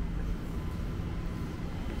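Outdoor city street ambience: a low, uneven rumble with a faint steady hum running under it.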